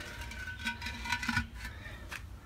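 Faint light knocks and scrapes of a glazed ceramic flower pot being handled and tilted, with a few scattered clicks.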